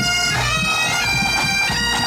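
Pipe band playing on the march: Great Highland bagpipes sound a melody whose notes change several times a second over their steady drones, with drum beats underneath.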